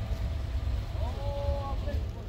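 Faint background voices of people talking over a low, uneven rumble; one voice is clearest about a second in.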